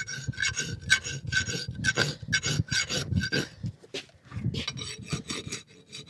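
Farrier's flat hoof rasp stroked back and forth across the wall of a shod horse hoof, a rough scraping at about two strokes a second, with a short break a little past halfway before the strokes resume.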